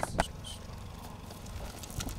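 Quiet, steady low rumble of outdoor background noise, after a brief clipped sound right at the start.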